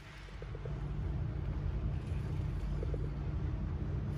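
Shimano Exsence BB spinning reel cranked fast by hand: a steady low whirr of the gears and rotor that builds over the first second and then holds. It runs smoothly and quietly, a sign the reel is in good working order.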